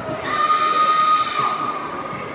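A child's kiai: a loud shout held on one steady high pitch for about a second, sliding down and dying away near the end.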